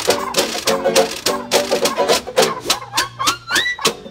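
Jug band playing an instrumental break: a washboard keeping a steady beat under banjo and trumpet. Near the end a whistle-like tone slides upward in steps.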